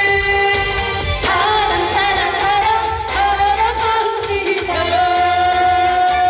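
A woman singing a Korean trot song into a hand-held microphone over a musical accompaniment with a steady bass, her long held notes wavering with vibrato.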